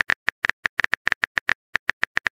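Phone keyboard typing sound effect: a quick, even run of short clicky taps, about eight a second, as a text message is typed.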